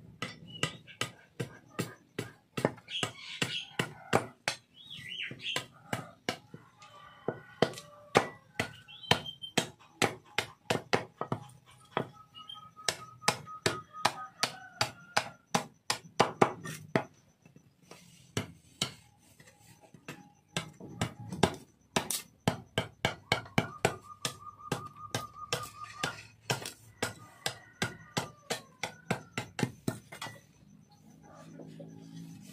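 A broad machete-like blade chopping and hacking at a small block of wood held against a wooden stump, a fast run of sharp strokes, several a second, with a brief pause about two-thirds of the way through.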